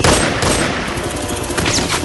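A rapid volley of gunfire that starts abruptly, with bullets striking a tree trunk and a couple of high falling whines near the end.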